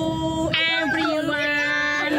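A group of children and women singing together, holding long steady notes.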